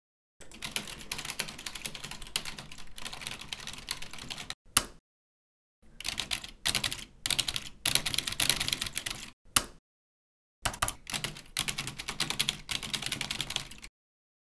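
Rapid typing on a computer keyboard in three runs separated by short silences, the first two runs each ending with a single louder keystroke.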